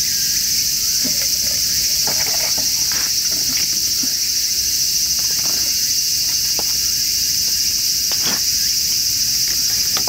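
A steady, high-pitched chorus of insects, with a few faint knocks and clinks of a glass bottle and mug being handled.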